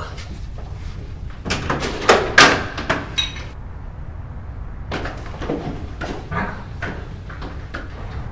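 Scuffle at a wooden front door: a run of knocks, shuffles and clicks from bodies and the door as it is opened, loudest about two seconds in, with a brief high squeak just after three seconds.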